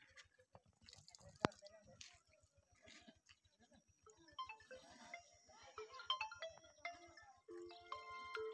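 A simple electronic beeping melody like a phone ringtone starts about halfway through and gets louder near the end. Before it there are faint voices and one sharp click about a second and a half in.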